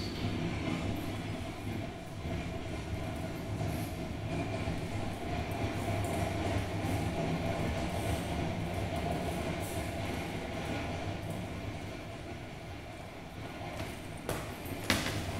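Recorded subway train running, a steady rumble, played back through speakers in a hall.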